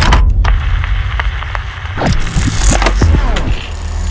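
Animated logo sting in sound design: a deep bass rumble under sharp hits near the start and quick swept whooshes and glides in the middle.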